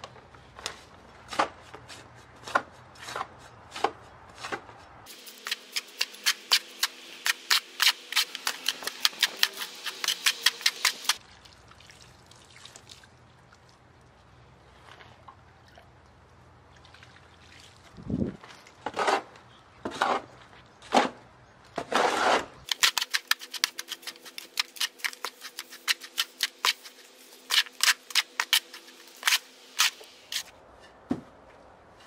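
A mortar hoe scraping and chopping through decomposed-granite soil and white powder in a plastic mortar tub during hand mixing. The scrapes come in fast, even runs of several a second, with a few louder, longer scrapes near the middle.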